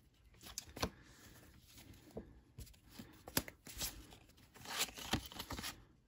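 Cardboard baseball cards being thumbed through by hand: quiet, scattered flicks and sliding rustles as cards are moved from stack to stack, coming more often near the end.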